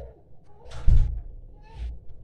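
A door thudding shut about a second in, followed by a couple of softer knocks.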